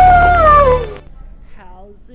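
A wolf howl over music: one long call that slowly falls in pitch and drops away at the end, cutting off about a second in.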